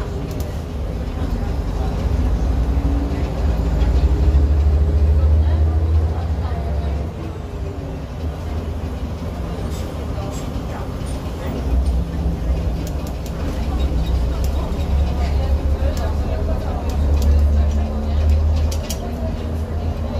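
Jelcz 120M/3 city bus heard from inside the cabin while driving: a low diesel engine drone that swells, eases off in the middle, and swells again, with a few sharp rattles and clicks in the second half.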